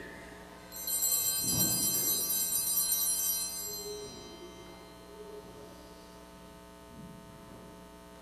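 Small altar bells (sanctus bells) ring out together about a second in, then fade away over about three seconds. They mark the elevation of the consecrated host.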